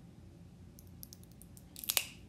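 Fingernails picking at the perforated seal on a glass dropper bottle's cap: faint scattered crinkling ticks, then a louder burst of crackling near the end.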